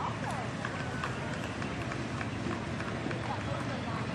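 Steady outdoor background noise with faint, indistinct voices in the distance.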